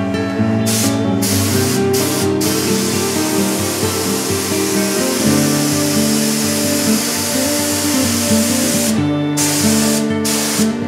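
Compressed-air spray gun hissing as it sprays epoxy primer onto the car body. The trigger is let go for short breaks several times early on and once for longer near the end. Background music plays underneath.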